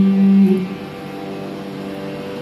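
A held melodic note of a Carnatic raga alapana fades out about half a second in, leaving the steady drone of an electronic tanpura.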